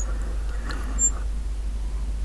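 Steady low electrical hum with a few faint, brief high squeaks as the tester's potentiometer knob is turned, about a second in and near the start.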